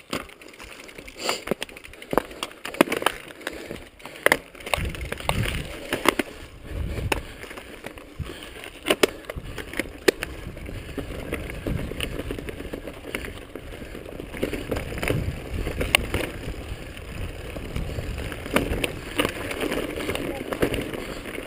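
Mountain bike clattering and rattling over a rough rocky dirt trail, with repeated sharp knocks from the bike and tyres hitting rocks. A low rumble of wind on the microphone comes in about five seconds in.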